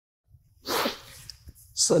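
A man's single short, sharp breath or sniff, loud on a close lapel microphone, after a moment of silence. His speech starts near the end.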